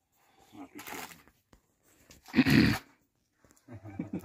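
A dog making two short vocal sounds, a faint one about a second in and a louder one about halfway through.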